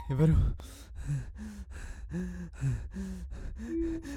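A person gasping and whimpering in fear: a quick string of short, breathy cries.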